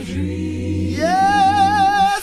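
Unaccompanied gospel singing by several voices in harmony, over a low held bass note. About a second in, a high voice enters and holds a long note with vibrato.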